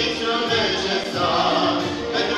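Two young girls singing a Christian hymn as a duet into a handheld microphone, holding sustained notes that shift in pitch as the melody moves.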